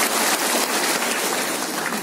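Audience applauding steadily, a dense clapping after a song has ended.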